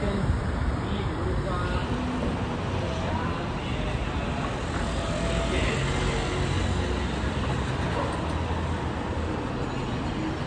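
City street traffic: cars running and passing on the road in a steady low rumble.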